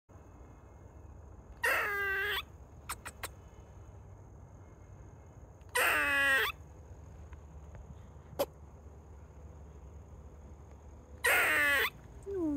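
Eastern gray squirrel giving three drawn-out moaning calls, each under a second long and a few seconds apart: the moan gray squirrels give when alarmed or distressed.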